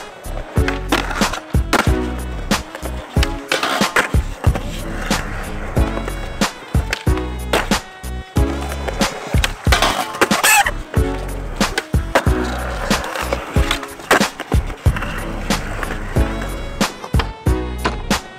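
Skateboard on concrete: urethane wheels rolling, with sharp pops, clacks and landings as tricks are done on ledges and flat ground. Music with a heavy bass beat plays under it.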